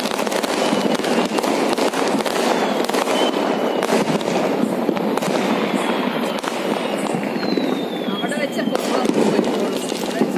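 Diwali fireworks and firecrackers going off in a dense, continuous crackle of rapid pops.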